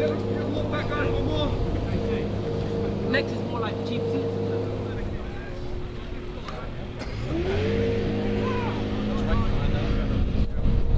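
An engine running at a steady pitch. It drops away about five seconds in, then rises back up to the same steady pitch a couple of seconds later. Faint voices talk over it.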